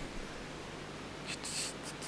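Quiet room tone, with a few faint, brief rustles in the second half.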